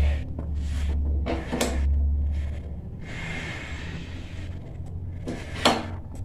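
A go-kart clutch being slid by hand onto an engine's output shaft over a long key: metal scraping and clunking, with a sharp click near the end.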